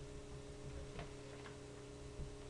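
Steady low electrical hum with two faint clicks about a second in.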